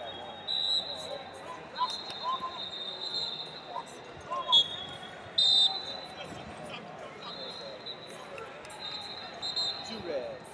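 Busy wrestling-hall ambience: a crowd's distant voices and shouts over a steady din, with short high-pitched tones and sharp squeaks coming and going, the loudest burst about five and a half seconds in, as one wrestler takes the other down on the mat.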